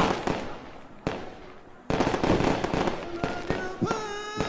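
Fireworks going off in a run of cracks and pops, with a sudden loud burst a little under two seconds in that then fades away. A voice or music comes in near the end.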